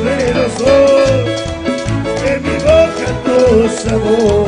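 Live cuarteto band music: a bass beat pulsing about twice a second under a melody line that slides up and down.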